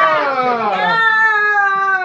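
A cat's long, drawn-out meow, starting sharply and held for about two seconds as it slides slowly down in pitch.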